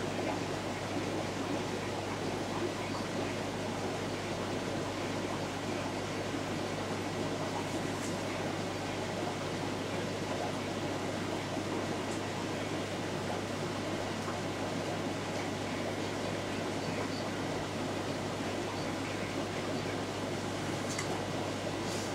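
Steady hum of an aquarium air pump, with an even hiss of air bubbling through an air-driven moving bed filter in the tank.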